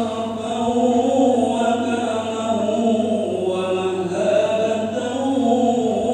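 Islamic liturgical chanting by a single voice in long, slowly bending held notes.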